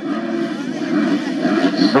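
A pack of motocross bikes running together at the starting gate, many engine notes overlapping into a steady drone while the riders wait for the start.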